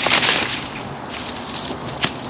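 Rustling of bramble stems and polytunnel plastic sheeting as a bramble is cut down at its base, loudest in the first half-second.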